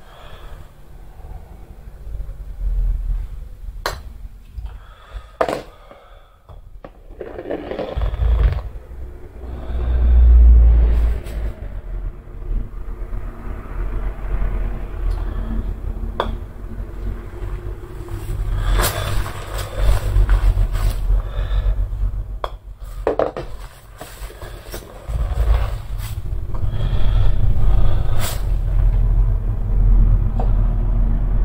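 Golf balls being putted along a carpet putting mat laid on a tatami floor: a handful of sharp clicks from putter strikes and balls knocking together, and a low rumble as balls roll along the mat, loudest about ten seconds in and again near the end.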